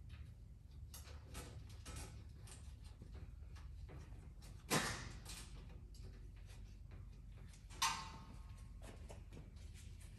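Light clicks and taps of galvanized sheet-metal nest parts being handled and fitted into place, with two sharper metal knocks about five and eight seconds in, the second ringing briefly.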